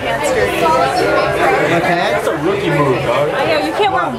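People talking, overlapping chatter in a busy restaurant dining room.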